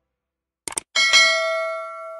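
Subscribe-button animation sound effect: a quick double click, then a bell ding about a second in that rings on and slowly fades.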